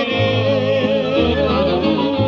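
Norteño music: a wavering lead melody over guitar, with bass notes changing about once a second.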